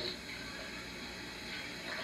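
Steady low hiss with a faint hum, the background noise of an old video recording replayed from a TV screen, with no distinct sound event.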